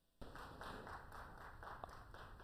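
Faint applause, many scattered hand claps overlapping, starting a moment in.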